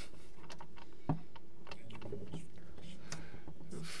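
Scattered soft clicks and taps over a low steady hum, with one slightly louder knock about a second in.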